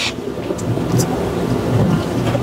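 Handheld microphone being passed from one person to another, picking up handling noise: a low rumble with a few light clicks and knocks.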